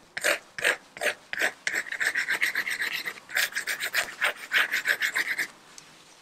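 Paintbrush scratched in quick repeated strokes across textured watercolour paper, laying in blades of grass: a rapid series of rasping scrapes, several a second, that stops about half a second before the end.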